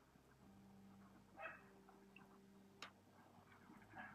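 Near silence: a faint steady hum, with one brief faint sound about a second and a half in and a single sharp click near three seconds.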